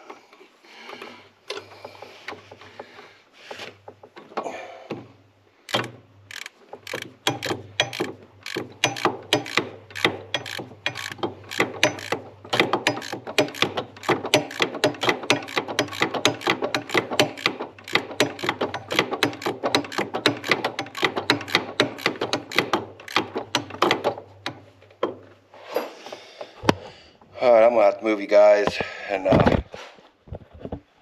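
Hand ratchet wrench clicking in quick, even strokes, about three a second, as the connecting rod cap bolts of a Yamaha G2 golf cart engine are tightened a little at a time. A few scattered clicks come first, and the clicking stops a few seconds before the end.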